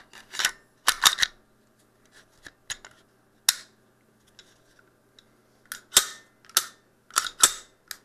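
Sig Sauer P320 9mm pistol being function-checked after conversion to a subcompact grip module: a series of sharp, irregularly spaced clicks and clacks from the slide being racked and the trigger being pulled and reset.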